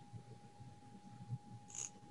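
Quiet room tone picked up by a video-call microphone, with a faint steady tone underneath and one short, soft hiss-like noise near the end.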